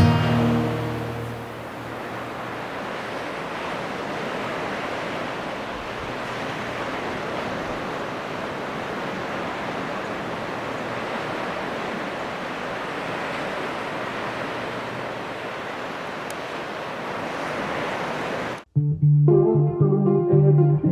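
Ocean surf breaking on a beach, a steady, even wash of waves. Background music fades out in the first second or two, and guitar music cuts in near the end.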